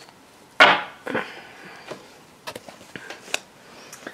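Tarot cards being handled: a sharp snap of a card about half a second in, then softer slides and a few light clicks as a card is drawn from the deck and laid down.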